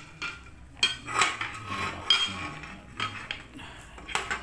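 Hinged iron kue semprong (egg roll) molds clanking and clinking as they are handled and opened, a run of sharp metal knocks with short ringing, loudest about two seconds in.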